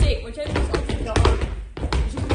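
Children's dance steps: a quick run of thumps and taps from feet and hands during a group routine, with voices over them.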